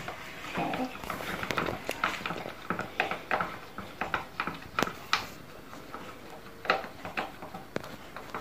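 A stirring stick tapping and scraping around a plastic bowl as slime is mixed, giving irregular clicks and knocks.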